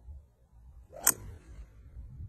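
Golf driver striking a ball off the tee: a single sharp crack about a second in.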